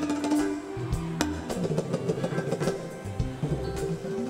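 Live mbalax band playing: electric guitar over drums and percussion.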